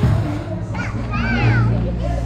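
A young child's high voice rising and falling briefly about a second in, over steady background music.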